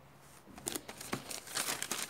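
A long paper till receipt rustling and crinkling as it is handled and turned over, a string of small crackles starting about half a second in.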